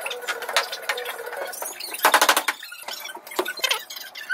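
Handling noise from flat-pack furniture assembly: panels and hardware clicking, knocking and scraping on a tile floor, with some squeaks. About halfway through comes a short burst of rapid, even ticking, the loudest sound.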